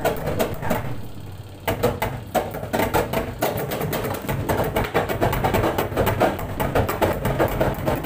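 Twin-tub washing machine's spin dryer running with a low hum and a rapid, irregular clattering and knocking that gets heavier about two seconds in. This is typical of a damaged, loose or detached spin-shaft seal.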